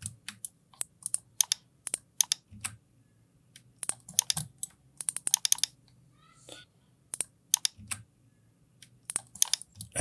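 Clusters of small, sharp clicks from a computer mouse and keyboard, with short pauses between the clusters.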